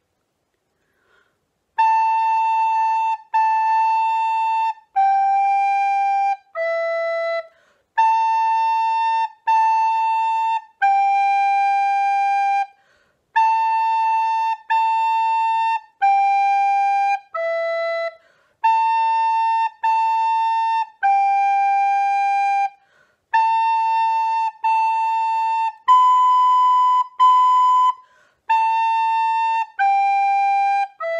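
Descant recorder playing a slow, simple beginner tune at practice speed, mostly on the notes B, A, G and E, starting about two seconds in. Each note is held about a second, with short breaks between phrases.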